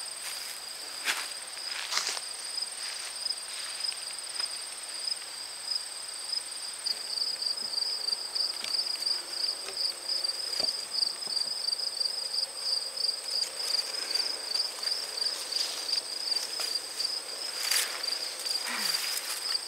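Insects trilling steadily in a high, finely pulsing chorus. Brushing of leaves and footsteps come through as the camera is carried through dense garden plants, with short rustles about a second in, at two seconds, and again near the end.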